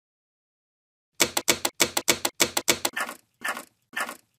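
Typewriter keystroke sound effect: sharp clicks start about a second in, first in quick pairs about three times a second, then slowing to single strikes about twice a second near the end.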